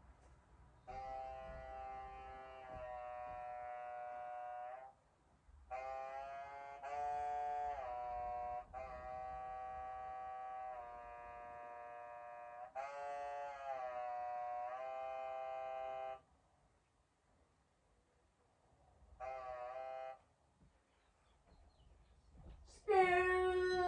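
Music of held chords stepping from one to the next, with no beat, played through a tablet's small speaker. It comes in three phrases: a long one from about one second in to about sixteen seconds, with a short break near five seconds, then a brief phrase near the end.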